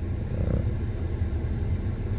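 Ford car's engine idling, a steady low rumble heard from inside the cabin.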